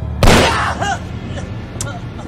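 A single gunshot about a quarter second in, sharp and loud, with a short echoing tail: a man shooting himself in the hand on command. A brief voice follows just after it.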